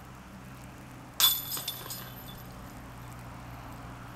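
A disc striking the chains of a disc golf basket: a sudden metallic clink and jingle about a second in, ringing away over about a second, over a faint steady low hum.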